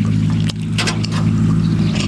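A person chewing a mouthful of food, with a few short, sharp mouth smacks about halfway through, over a steady low hum.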